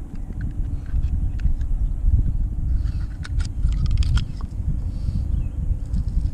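An oyster knife scraping and clicking against the shell of a large oyster as it is pried open by hand: a scatter of small clicks and scrapes, busiest around the middle. Under it runs a steady low rumble.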